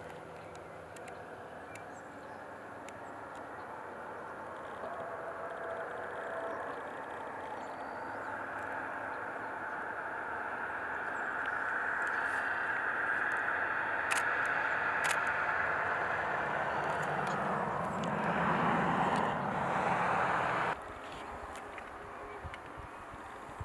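Steady drone of a distant engine, swelling gradually over the first half and holding, then cutting off abruptly near the end. Two short sharp clicks come about two-thirds of the way through.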